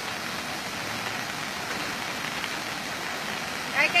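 Steady rushing noise of rain and running water, with no distinct events, until a voice comes in near the end.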